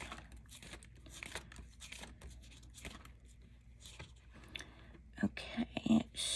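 Pages of a spiral-bound sticker book being turned and handled: soft paper rustles and crinkles of the sticker sheets, with many small irregular ticks.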